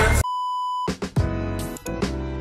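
A single steady electronic bleep lasting about half a second, a censor-style beep sound effect, cut off sharply. About a second in, intro music with held, repeated chords starts up.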